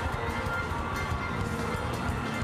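Live church music with a steady beat and held tones, mixed with the noise of a large congregation on its feet during a praise break.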